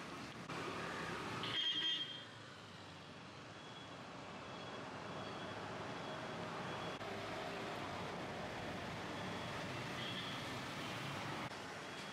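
Faint outdoor street ambience with the steady rumble of road traffic. A brief high-pitched sound stands out just under two seconds in.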